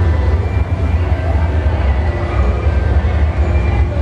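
Steady low rumble of a large indoor hall's background noise, with faint steady tones above it.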